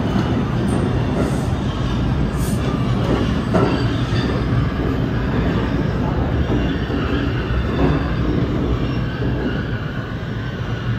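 An R142 subway train pulls out of the station and runs along the platform: a loud, steady rumble of wheels on rail, with faint high wheel squeal coming and going.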